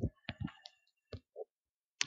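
Several short clicks, about five in the first second and a half, from the presenter operating the laptop as a filter checkbox on the web page is clicked.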